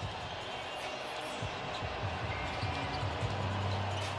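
Basketball being dribbled on a hardwood court in a nearly empty arena, over the arena's low background noise. A steady low hum comes in during the second half.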